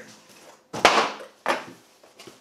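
The cardboard lid of a guitar shipping box being moved away and set down: two sudden knocks of cardboard, a louder, longer one about a second in and a shorter one half a second later.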